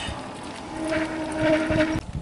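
Electric mobility vehicle's motor whining steadily, starting under a second in, with a low rumble beneath.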